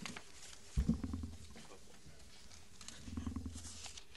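A low thump about a second in, followed by brief rumbling, and another stretch of low rumbling with faint clicks near the end: handling noise close to a table microphone.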